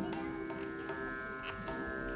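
A harmonium holds a steady drone chord while the tabla sound a few scattered, separate strokes.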